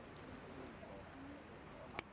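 A few faint, low, short bird calls, like cooing, against a quiet outdoor background, with a sharp click right at the end.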